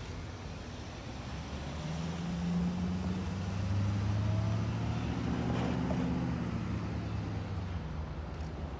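Cars and an SUV passing close by on the road, one after another, over a steady low hum. The engine and tyre sound swells to its loudest around the middle and eases off toward the end.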